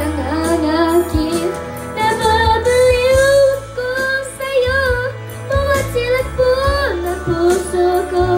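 A child singing a Tagalog ballad into a handheld microphone over a karaoke backing track with a steady bass line. The voice holds long, wavering notes and drops sharply in pitch about seven seconds in.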